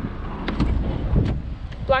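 Rear passenger door of a Mercedes-Benz GLS 450 being opened by its outside handle: two short clicks about a second apart as the handle is pulled and the latch releases, over a low steady rumble.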